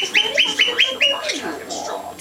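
A parrot giving a fast run of short, high squawks, about five a second, which stops a little past a second in.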